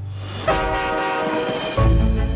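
A loud, sustained horn-like blast of several tones at once starts suddenly about half a second in and holds for over a second, followed near the end by a heavy deep bass note from the trailer's soundtrack.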